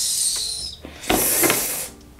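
Hands rubbing and pressing over a wig's hair at the hairline, two bursts of scratchy rustling, the second louder.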